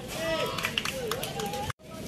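Players' voices shouting and calling across an outdoor football pitch, mixed with a few sharp taps. Near the end the sound cuts out completely for a moment.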